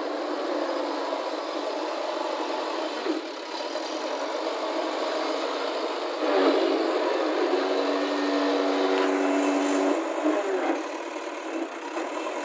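JCB 3DX backhoe loader's diesel engine running while the machine drives and works its loader. The engine picks up and runs louder under load about six seconds in, holds there for about four seconds, then drops back.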